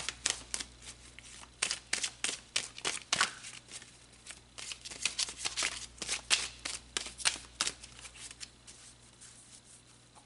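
A tarot deck being shuffled by hand: a quick, irregular run of card slaps and snaps that thins out near the end.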